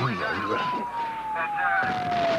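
A siren wailing, its single tone falling slowly in pitch, mixed with voice-like sounds.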